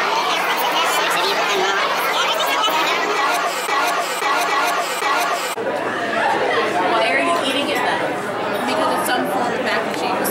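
Indistinct chatter of many overlapping voices in a busy room, with no one voice standing out. The sound jumps abruptly about halfway through, to similar chatter.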